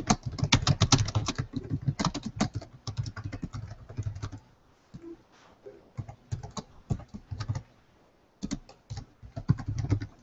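Computer keyboard being typed on in bursts: a fast run of keystrokes for the first four seconds or so, a pause with only a few scattered keys, then another short run near the end.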